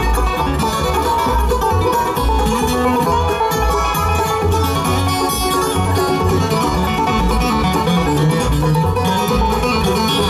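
Live bluegrass band playing an instrumental break between vocal choruses: banjo, mandolin and acoustic guitar over a steady upright bass line.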